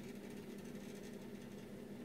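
Faint steady low hum of room tone, with no distinct events.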